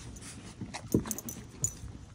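Labradoodle puppies jostling at their nursing mother: a few short whimpers among scattered small ticks and knocks.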